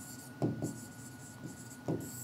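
Stylus writing on the glass of an interactive display panel: faint scratching of the pen tip with two brief louder strokes, about half a second in and near the end.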